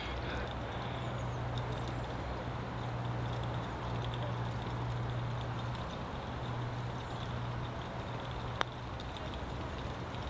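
A single sharp click of a putter striking a golf ball, about eight and a half seconds in, over a steady low background hum.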